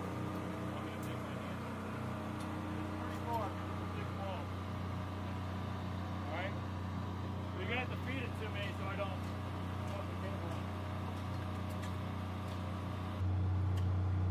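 Steady low hum of an engine running, with a few brief voices over it; the hum changes abruptly to a louder, duller drone near the end.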